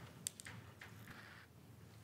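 Near silence: room tone in a meeting chamber, with a faint click or two and a soft brief hiss near the middle.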